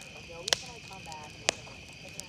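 Wood bonfire crackling, with two sharp pops about a second apart, over a steady chorus of crickets and faint voices in the background.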